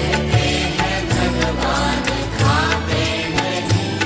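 Instrumental karaoke backing track of a Hindi devotional bhajan, with a steady percussion beat and bass, in a pause between sung lines.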